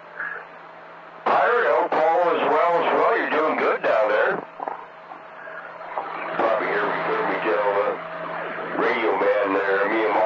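Voices coming through a CB radio receiver, narrow and thin, over a steady low hum and background noise. One transmission cuts in about a second in and runs for about three seconds, and more talk follows from about six and a half seconds on.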